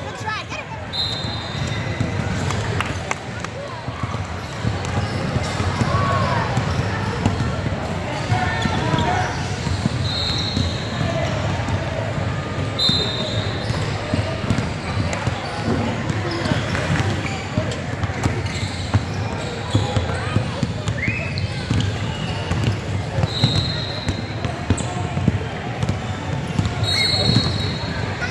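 Live youth basketball game in a gym: a basketball dribbling on the hardwood, with players and spectators calling out in the echoing hall. Brief high-pitched squeaks come several times.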